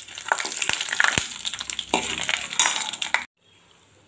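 Oil sizzling in a steel pot as dried red chillies, seeds and lentils fry for a tempering, stirred with a steel spoon that clicks against the pot a few times. The sound cuts off suddenly about three seconds in.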